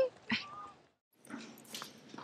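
The tail of a woman's spoken line with a brief vocal sound just after it, then a short silence and faint room noise.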